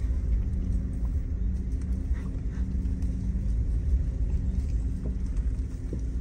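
Low, steady rumble of a car moving at a crawl: engine hum and road noise.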